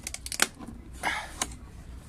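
Thin clear plastic clamshell seed box being unsnapped and opened by hand: a quick run of sharp plastic clicks, the loudest about half a second in, then a brief crinkling rustle and one more click.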